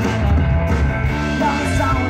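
Live rock band playing loudly and steadily, with electric guitars, bass guitar and a drum kit.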